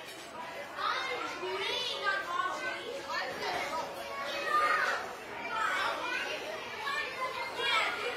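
Many children's voices at once, chattering and calling out over one another.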